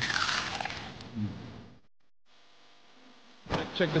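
A high, hissing buzz that fades away over about two seconds, then drops to near silence; street noise cuts back in near the end.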